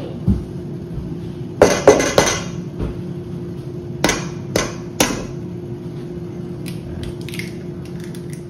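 Eggs being tapped and cracked on the rim of a stainless steel mixing bowl: a quick cluster of knocks about two seconds in, then three sharp single taps about half a second apart a little later.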